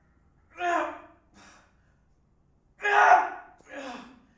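A man's loud, voiced breaths of effort as he presses heavy dumbbells on an incline bench. There are two strong ones, about half a second in and again about three seconds in, each followed by a shorter, fainter breath.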